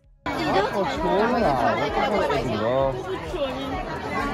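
Chatter of a dense crowd: many voices talking at once close around the microphone, starting abruptly a quarter second in.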